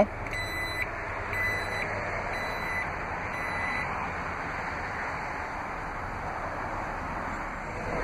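Power liftgate of a Jeep Grand Cherokee sounding its warning chime, four electronic beeps about a second apart, as it begins to close, followed by a steady noise while the gate lowers.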